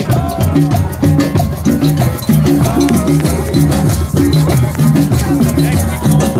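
Drum circle playing a steady rhythm: hand drums with repeating low notes and shakers rattling over them.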